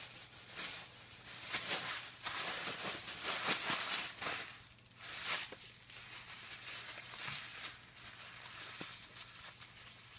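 Thin HDPE plastic shopping bags being crumpled and handled, a crinkly rustling that is loudest over the first four or five seconds and then continues more quietly.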